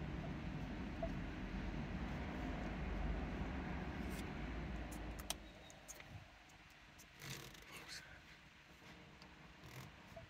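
A steady low hum in the car's cabin drops away about five seconds in, just after a sharp click. Faint taps and rustles follow, from a hand on the head unit's touchscreen and buttons.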